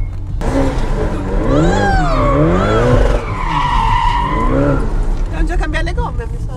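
Ferrari Portofino's tyres squealing as the car slides round a roundabout, the squeal wavering up and down in pitch and loudest a little past halfway, over the steady drone of its twin-turbo V8.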